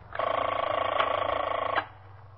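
A telephone ringing once: a single steady ring about a second and a half long that starts and stops abruptly.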